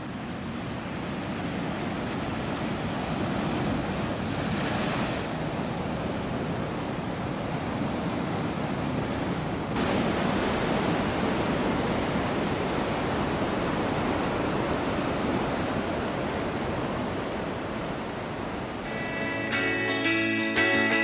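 Ocean surf: waves breaking and washing in a steady rush of noise, a little louder from about halfway through. Strummed guitar music comes in just before the end.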